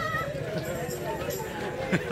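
Voices of a walking group of carollers. A held melody note trails off just after the start, and a few sharp knocks come near the end.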